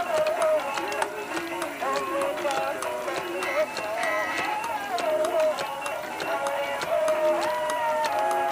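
Several battery-operated animated Santa Claus figurines playing their music at the same time, a few melodies overlapping one another, with a light ticking running through.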